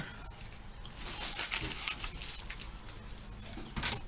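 Plastic packaging crinkling and rustling as a new, unissued helmet-liner sweatband is unwrapped by hand, with one sharp click just before the end.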